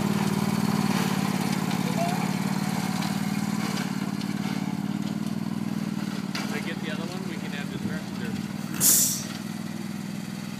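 Riding lawn mower engine running at a steady speed, fading slowly as the mower drives away. A brief loud hiss cuts in near the end.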